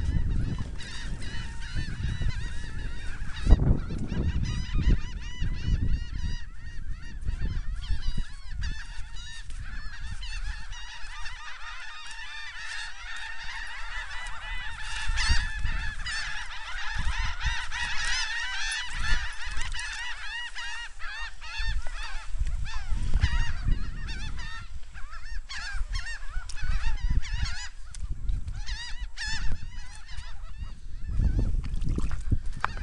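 A flock of birds calling continuously, many short overlapping calls, busiest in the middle stretch, over a low uneven rumble.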